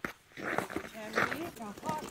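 Indistinct voices of people talking, with no clear words, after a brief click at the start.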